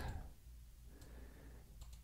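A few faint computer mouse clicks over quiet room tone.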